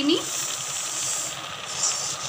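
Granulated sugar poured from a bowl into a kadhai of hot, thickened milk: a steady hiss lasting about a second and a half.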